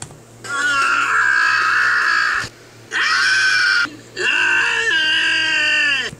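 A cartoon character screaming: three long, shrill cries with short breaks between them, played through a screen's speaker.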